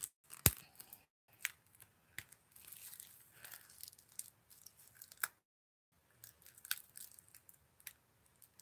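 Faint handling noises of a cosmetics palette and its packaging: scattered sharp clicks, the loudest about half a second in, with light rustling between them. Partway through, the sound cuts to dead silence for about half a second, a dropout in the connection.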